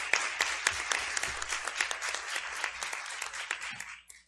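Audience applauding, a dense even clatter of many hands clapping that ends suddenly at the close.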